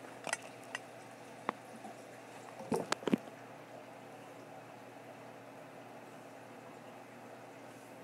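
Reef aquarium's pumps and circulating water running steadily, a low hum with a bubbling, liquid wash. A few light clicks early on are followed by a short cluster of louder knocks about three seconds in, from the camera phone being handled and moved.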